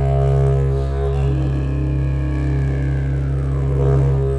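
Music: a steady low didgeridoo drone, its overtones shifting about a second in and sweeping downward near the end.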